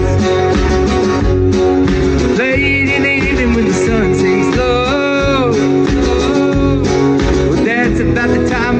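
A live band playing a country song: guitar with singing over a steady beat.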